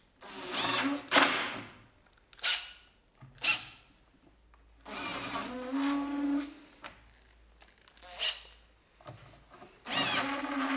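Cordless drill-driver driving wood screws through countersunk pilot holes into a glued crosspiece, in several short bursts that end in brief blips as each screw seats. The screws stand in for clamps, pulling the glued joint tight.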